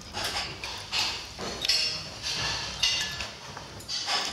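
Eating sounds at a dining table: a spoon being used and soup sipped off it, in a few short, separate bursts.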